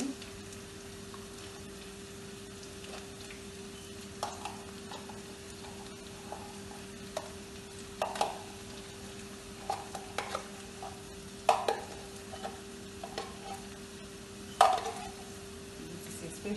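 Corned beef and onions frying in a pan, with a steady hum underneath and a utensil scraping and knocking against the pan in irregular strokes as the mix is stirred, the loudest stroke near the end.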